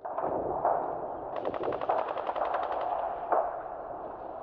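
Video game gunfire playing from the TV: a steady din of battle with a rapid burst of automatic fire in the middle and a single sharp shot near the end.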